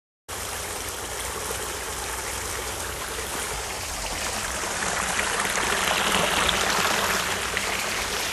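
Steady outdoor rushing noise that grows louder through the middle seconds and eases slightly near the end, over a low rumble.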